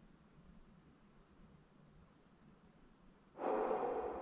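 Near-silent room tone, then, after about three seconds, a sudden electronic tone of several steady pitches together that slowly fades. It comes as a ghost-hunting light-up ball is triggered and lights.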